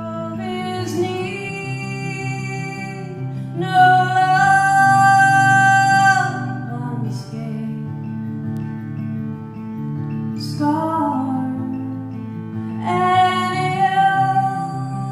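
A woman singing long held notes, without clear words, over a played acoustic guitar; the loudest held note comes about four seconds in.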